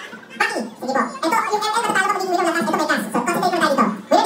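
A person's voice holding a long, wavering trilled sound that slowly falls in pitch.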